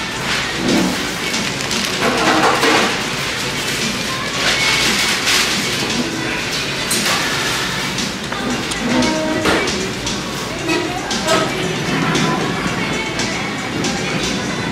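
Restaurant background music with vocals or diners' chatter, broken every few seconds by short bursts of crinkling from plastic gloves working in a plastic seafood-boil bag.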